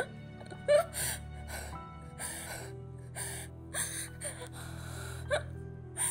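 A woman sobbing, with short gasping breaths about every half second to second, over a steady low music drone.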